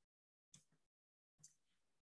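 Near silence: a gated pause between spoken sentences on a video call, with only faint traces of breath or room noise.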